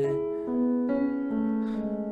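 Electronic keyboard on a piano sound playing a short passing fill between chords: single notes come in one after another about every half second and ring on together over a held lower note.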